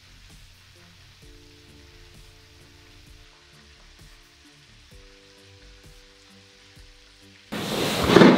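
Chicken frying in oil in a cast iron skillet: a steady, quiet sizzle, with soft background music of held notes under it. Near the end a much louder room sound cuts in abruptly.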